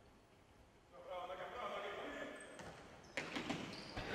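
Faint court sound from a futsal game on a wooden sports-hall floor. For about a second and a half a player's voice calls out, then near the end comes a quick run of sharp knocks from the ball being played and shoes on the floor.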